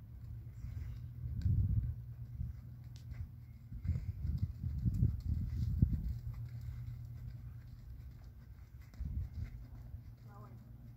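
A horse's hoofbeats in the soft sand footing of an outdoor arena as it is ridden along the rail, with a low rumble underneath that swells about a second and a half in and again from about four to six seconds in.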